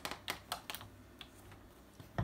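A quick run of light, sharp clicks and taps in the first second, then one more a little after a second in.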